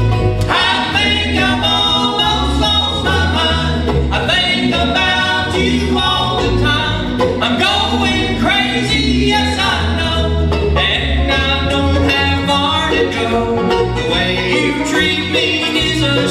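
Live bluegrass band playing: mandolin, five-string banjo, acoustic guitar and upright bass, with voices singing in close harmony over them.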